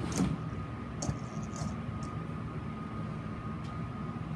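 Sphero BB-8 toy robot waking on its charging cradle, its ball starting to turn: a steady hum with a thin high whine, broken by a few light clicks.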